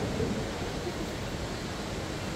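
Steady rushing background noise of a large indoor space, even and unbroken, with no distinct events.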